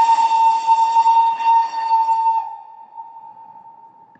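Steam train whistle, played as a stage sound effect: one long, steady, high blast that fades away over the last second or so, the train's departure signal.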